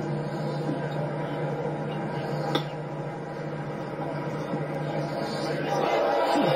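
A golf wedge striking the ball on a pitch shot: one sharp click about two and a half seconds in, over a steady hum of television audio heard through a TV speaker. Voices rise near the end.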